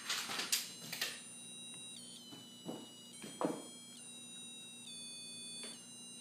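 Novelty Christmas tie's electronic sound chip giving out thin, high, buzzy tones that jump from one pitch to another every second or so, with its battery malfunctioning. A few brief rustles of handling in the first second and around three seconds in.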